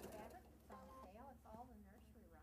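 Near silence, with faint background voices talking.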